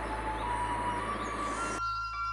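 Soft background music of held, flute-like notes with bird chirps woven into it, over a hiss that stops suddenly just before the end.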